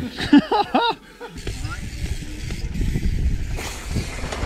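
A burst of laughter in the first second, then a steady low rushing rumble of wind on the microphone and trail noise from a mountain bike being ridden.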